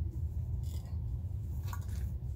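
A steady low rumble with a few faint handling sounds as a plastic military canteen is reached for and picked up.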